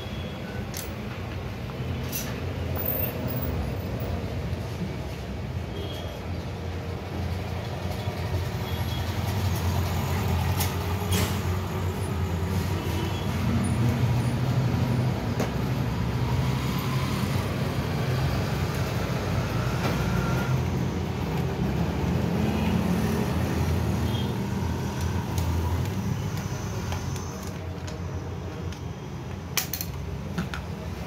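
Steady low rumble of motor-vehicle engines and traffic. A few sharp clicks and knocks come from a plastic motorcycle instrument cluster being handled and taken apart.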